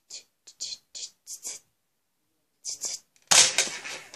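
Faint breathy whispering, then about three seconds in a single sudden loud pop of a Nerf Elite AccuStrike SharpFire spring-plunger blaster firing a dart, fading quickly.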